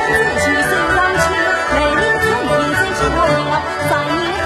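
Yue opera singing: a sung melodic line with wavering vibrato and pitch glides over traditional Chinese instrumental accompaniment with a regular beat.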